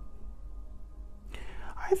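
Faint sustained background music tones, then about a second and a half in a breathy intake of breath that runs into the start of speech.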